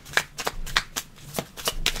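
Tarot cards being shuffled by hand: an irregular run of quick papery card flicks and snaps.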